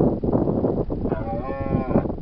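A deer stag calling: one drawn-out, tonal call beginning about halfway in, rising and then falling in pitch, over irregular rustling and scuffing of hooves on the ground.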